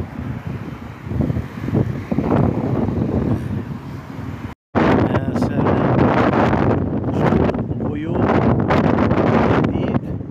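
Strong gusty wind buffeting a phone's microphone: a loud, rough rumble. It breaks off for an instant about halfway through, then comes back louder and hissier.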